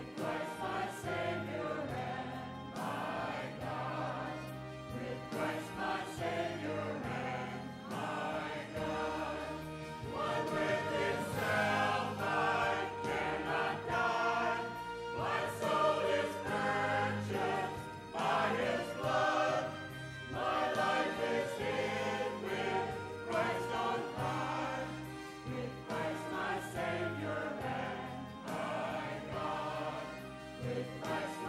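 Mixed church choir of men's and women's voices singing an anthem in harmony, swelling louder through the middle of the passage.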